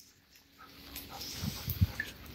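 A dog making soft sounds close by, starting about half a second in, with a few short low thumps near the end.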